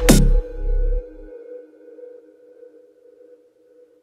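The closing seconds of an electronic trap/dubstep track: the last heavy drum hit with deep bass lands just after the start, the bass rings out for about a second, then a faint held synth tone fades away to nothing.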